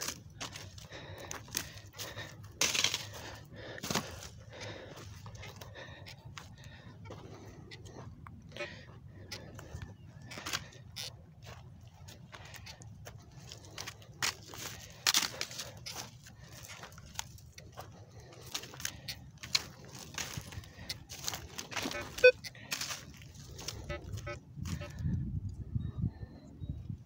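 Dry corn stubble crunching and snapping underfoot as someone walks through a harvested cornfield: irregular crunches throughout, over a low steady rumble.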